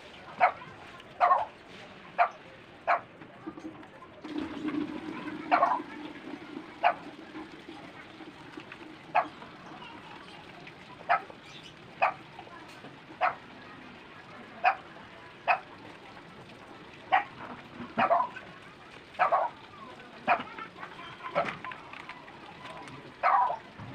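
A dog barking again and again, single short barks every second or two at an uneven pace. A faint low drone joins briefly between about four and eight seconds in.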